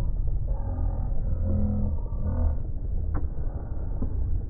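Steady low rumble on a phone microphone, with faint drawn-out calls in the middle and a single sharp click about three seconds in.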